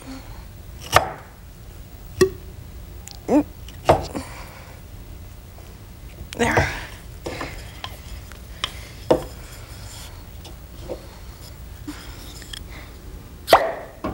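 Wooden dowel plugs knocking and sliding in the tube of a homemade pop gun as it is loaded: a scattering of separate sharp taps and knocks, with a louder one shortly before the end.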